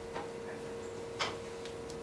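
Quiet room tone with a steady faint hum and two short clicks, one just after the start and a sharper one a little past a second in.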